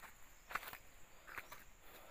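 Quiet outdoor ambience: a faint, steady, high insect drone, with a few soft footsteps on wet mud.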